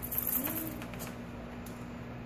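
A dog giving a single short, soft whine, one low note that rises and falls, over a steady low hum.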